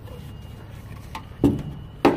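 Green plastic Good and Tight extender handle being fitted onto a steel ratchet strap buckle's handle: a light click about a second in, then a solid knock about one and a half seconds in, over a steady low rumble.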